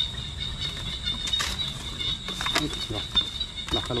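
Snakehead fish flapping and knocking about as they are shaken from a wire-mesh fish trap into a woven plastic basket, in a few short bursts. Under it runs a steady, high insect whine.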